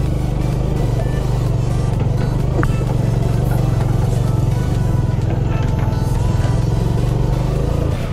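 Motorcycle engine running steadily at low speed while being ridden up a rough dirt track, with background music underneath.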